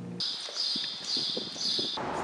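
A bird calling in the open air: four buzzy, high chirps about half a second apart, with faint ticking underneath.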